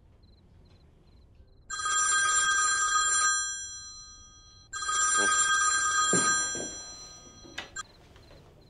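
Old black desk telephone's bell ringing twice, each ring about a second and a half long, the second fading out. A couple of short clicks follow near the end as the call is about to be answered.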